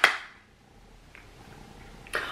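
A sharp plastic click from a stuck egg-shaped plastic case being pried at by hand, then quiet with faint handling about a second in.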